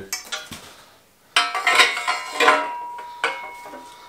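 Aluminium bike frame and fork clanking together as the fork is fitted into the head tube. After a faint click or two and a short lull, several sharp metal knocks come from about a second and a half in, and a thin ringing tone lingers after the later ones.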